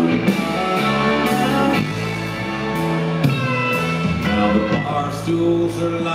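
Live band playing an instrumental passage: electric guitars with bending lead notes over drums and regular cymbal hits.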